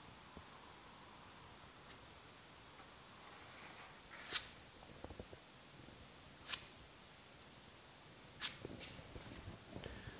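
A body filler spreader being drawn across a truck cab panel, laying filler on: faint scraping, with three sharp ticks about two seconds apart.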